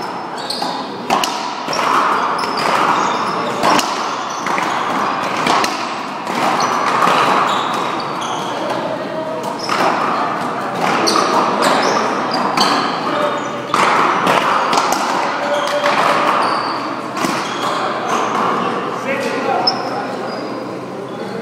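Racquetball rally: sharp cracks of the ball struck by racquets and hitting the wall, at irregular intervals a second or two apart, with people's voices throughout in a large echoing hall.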